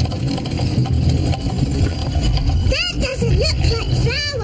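Steady low rumble of a cartoon wooden windmill's machinery turning, its cogs and grindstone working. A brief voice exclamation comes near the end.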